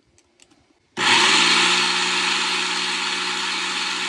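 Electric blender motor driving a stack of 3D-printed plastic planetary gearbox stages, switched on about a second in, spinning up quickly and then running steadily.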